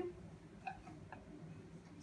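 Marker pen writing on a whiteboard: a few faint short strokes and taps.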